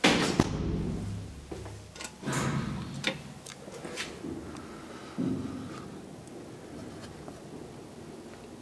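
Hinged landing door of a 1980s KONE hydraulic elevator being handled: a loud thud right at the start, then a series of knocks and clicks over the next few seconds.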